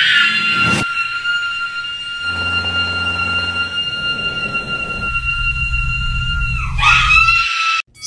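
A long, high-pitched scream held at almost one pitch for about seven seconds, wavering just before it cuts off near the end. A low rumble sits under it in the second half.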